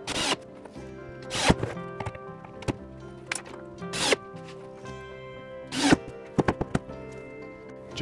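Cordless drill/driver driving wood screws through particleboard into pine blocks, in about five short bursts of motor whir, some rising in pitch as it spins up, followed by a few quick clicks near the end. Background music plays throughout.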